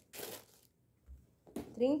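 Thin plastic shoe wrapping rustling briefly as a hand moves it inside a cardboard shoebox, followed by a faint low bump about a second in.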